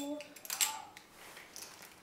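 Metal belt buckle clicking and a faux-leather belt rustling as the belt is threaded and fastened at the waist; one sharper clink about half a second in, then a few lighter clicks.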